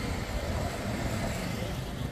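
Steady low rumble of city road traffic.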